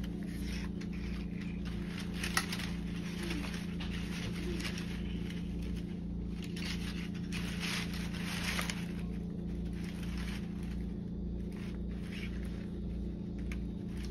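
Paper and tape being handled: scattered scratchy rustles and scrapes over a steady low hum that throbs about twice a second.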